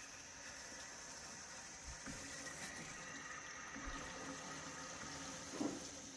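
Water hissing steadily as a valve is slowly opened and flow returns into a whole-house water filter housing, refilling the line after the cartridge change and pressure release.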